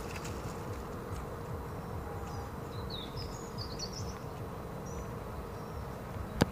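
Outdoor garden ambience: a steady low background rumble, with a few faint, high, short chirps about halfway through.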